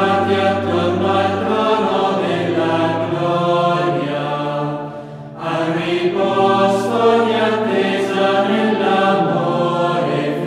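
Choir chanting in slow, long-held notes, with a brief pause in the singing about five seconds in.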